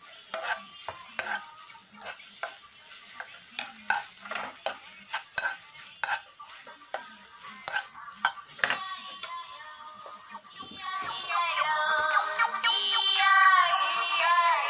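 A spoon stirring kimchi in a frying pan, with irregular clicks and knocks against the pan over a faint sizzle of frying. About two-thirds of the way through, music with a singing voice fades in and becomes the loudest sound.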